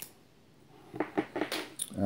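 Small plastic clicks and rattles from a GoPro Hero Session action camera and its cable being handled: one sharp click at the start, then a quick cluster of clicks about a second in.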